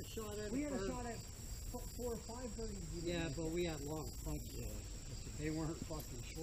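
Crickets chirring in a steady, continuous high-pitched drone, with men's voices talking indistinctly over it in several short stretches.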